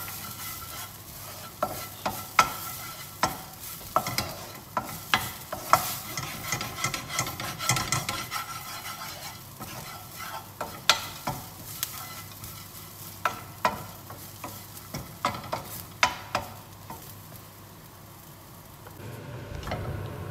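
Wooden spoon stirring and scraping grated coconut and rice being roasted in a frying pan, with frequent irregular knocks of the spoon against the pan over a faint sizzle. The stirring dies down near the end.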